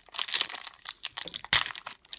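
Foil wrapper of a Panini Playoff football card pack crinkling as hands tear it open, a busy crackle with one sharp louder crack about one and a half seconds in.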